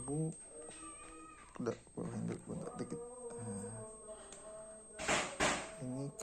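A voice, speaking or singing faintly in the background, with two short bursts of hiss about five seconds in.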